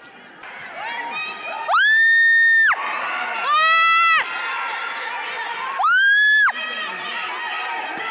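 Spectators cheering and shouting during a taekwondo bout, the din building after the first second. Three loud, shrill shouts close by stand out, each held about a second, at about two, four and six seconds in.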